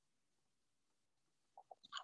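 Near silence: room tone, with a few faint short clicks near the end.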